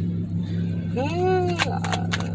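A woman's drawn-out, wordless 'hmm', rising then falling in pitch, about a second in. It sits over a steady low hum inside a car, with a few light clicks.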